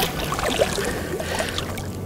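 A small hooked striped bass splashing and thrashing at the surface of shallow water as it is landed by hand, with water sloshing and dripping. The splashing eases off towards the end.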